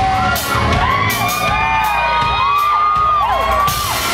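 Country band playing live, with a fiddle bowed over the bass and drums between sung lines, and gliding whoops from the audience.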